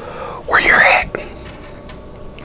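A man whispering, one short breathy whispered word about half a second in, followed by a small click and then a quiet room.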